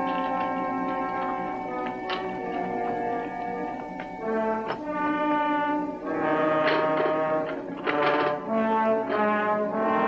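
Orchestral background score led by brass, with held chords that shift from note to note and swell louder about six seconds in.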